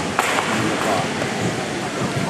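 An audience's noise: people's voices with some applause, as a steady wash of crowd sound.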